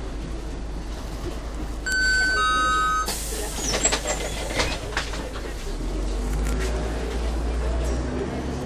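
A two-pitch electronic door warning tone sounds for about a second, then the bus's pneumatic doors hiss shut with a few knocks. Near the end the Volvo B10MA's underfloor diesel engine drones louder as the bus pulls away.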